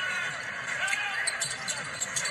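Basketball arena crowd noise from a game broadcast, with faint voices and a few short sharp sounds from the court about a second and a half in, typical of the ball bouncing and sneakers on the hardwood.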